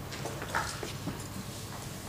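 Scattered short knocks and shuffling of people moving about a lecture room, over a steady low room hum.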